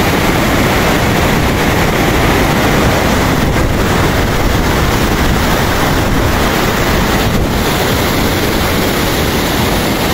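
A fast, silt-laden mountain stream rushing over boulders: a loud, steady wash of white water.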